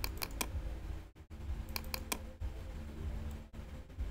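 Computer mouse clicking: a quick run of about three clicks at the start and another run of about three about halfway through, over a low steady hum.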